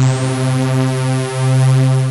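Synth pad preset from UVI's UV-XXX library sounding one bright, sustained note that holds steady.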